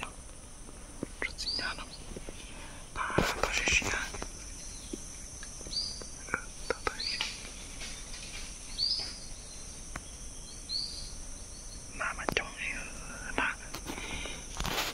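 A small songbird calling with short, high, down-slurred notes, repeated every second or two, over a steady high insect drone. A hushed human voice comes in briefly about three seconds in and again near the end.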